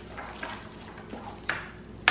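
Faint handling noise of plastic-wrapped swirl lollipops being sorted by hand on a wooden table, with a short sharp tap or crinkle about one and a half seconds in.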